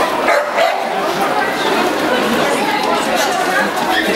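A dog barking twice, about half a second in, over steady crowd chatter.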